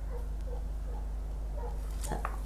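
Low steady background hum with a few faint soft sounds as paint is poured from one small plastic cup into another.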